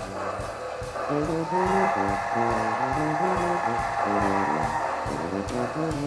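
Background music: an upbeat jazz tune with a bass line stepping through notes at an even pace.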